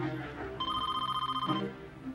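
A telephone ringing once, a trilling ring about a second long, over background film music.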